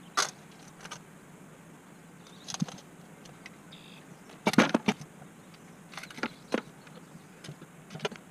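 A shovel scraping through ashy rubble and scrap metal clinking as it is scooped and tipped into a plastic bin. The sound comes as scattered sharp clinks and scrapes, with the loudest cluster about halfway through.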